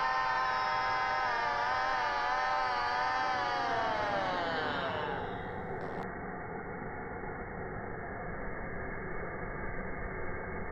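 A long sung note with a wavering vibrato slides down in pitch and dies away about five seconds in, like a song winding down. It gives way to a steady hiss of noise like static, which turns duller about a second later.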